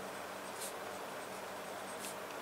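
Pen writing on paper: a couple of short, faint scratching strokes over a steady low hiss and hum.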